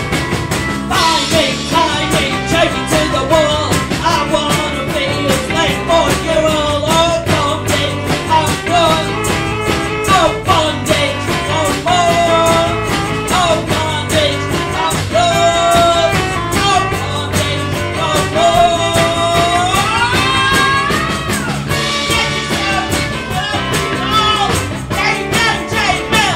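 Live rock band playing a full-band song with drums, electric guitar, bass and tambourine under a wavering lead melody that bends between notes and climbs in a long upward slide near the end.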